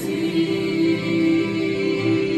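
A small vocal group singing in harmony through microphones, holding long sustained notes.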